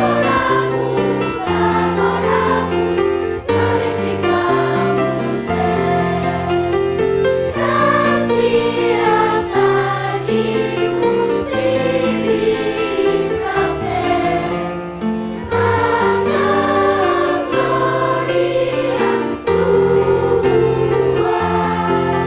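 A children's and youth choir singing a sacred piece, accompanied by a brass ensemble of French horns, tuba and trumpets. Low held brass chords change every second or two under the voices.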